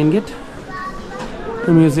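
Speech: a man talking at the start and again near the end, with other, higher-pitched voices between.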